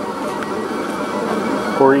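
Kossel Mini delta 3D printer running a print: a steady mechanical whir from its motors and cooling fan, with faint high steady tones. A man's voice starts near the end.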